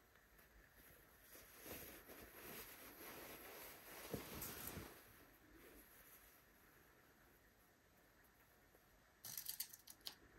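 Faint rustling of wool gabardine and rayon lining being handled and matched up at the waistband, for a few seconds. A short burst of small clicks near the end as a pin is drawn from the pincushion.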